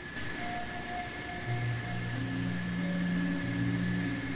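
Slow instrumental introduction to a stage-musical ballad. A single held higher note comes first, then low sustained notes enter about a second and a half in and hold beneath it.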